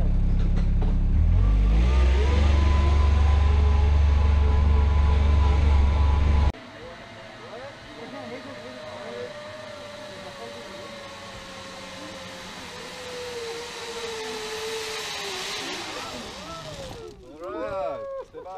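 A vehicle's engine running loudly as it climbs a dirt track, its note stepping up about two seconds in. It cuts off suddenly, and a quieter zip-line trolley whine on the steel cable follows, slowly falling in pitch and dropping steeply near the end as the rider comes in and slows. A voice is heard at the very end.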